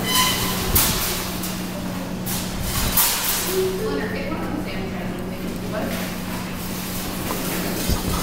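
Claw machine in play: a steady hum runs under a few clicks and knocks as the claw is steered over the plush prizes.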